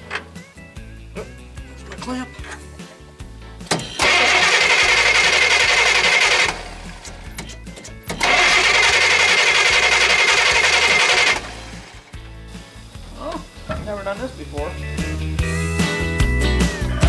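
Starter motor of a 396 big-block Chevy V8 cranking in two bursts of about two and a half and three seconds, a harsh steady whir with a high whine running through it, without the engine catching.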